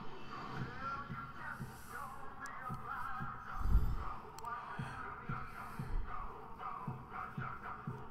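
Film trailer soundtrack playing back in the room: music with a low beat that thumps about every two-thirds of a second. A heavier low hit, the loudest sound, comes a little before the middle.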